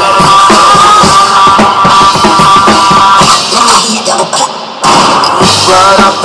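Drum kit played over a rock instrumental with sustained high chords; the music thins out about three and a half seconds in, then drums and band come back in together just before five seconds.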